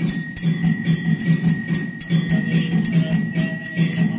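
Temple bells ringing rapidly and evenly, about six strikes a second with a steady ringing tone, over a regular low drum-like beat during the lamp aarti.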